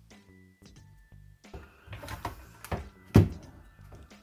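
Background music for the first second and a half, then handling knocks and clatter from a plastic laptop cooling stand, with one loud thunk about three seconds in.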